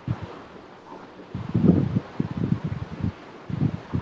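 Muffled low rumbling and rustling noise over a participant's microphone on a video call. It comes in irregular spells about a second in and again near the end, over a faint steady hiss.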